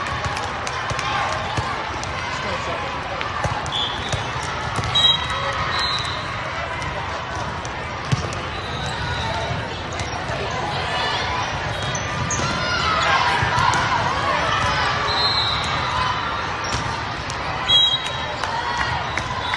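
Volleyball being played in a large, echoing hall: a few sharp hits of the ball, short high squeaks of shoes on the court floor, and steady chatter and shouting from players and spectators that swells about two-thirds of the way through.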